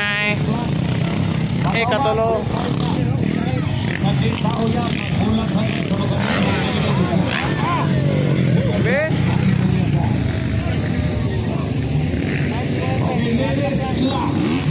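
Motocross dirt bike engines running and revving as riders pass, with voices in the background.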